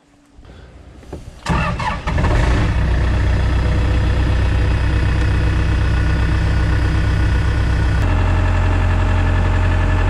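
Track loader's diesel engine cranking and catching about a second and a half in, then running steadily. About eight seconds in, its low hum gets stronger.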